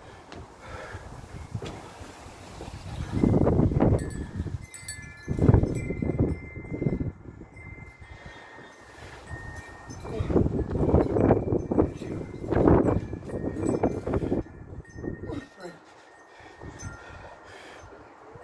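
A man breathing hard in repeated loud gusts while doing a fast set of pull-ups on a wall-mounted bar. Thin, high, steady ringing tones come and go through the middle of the set.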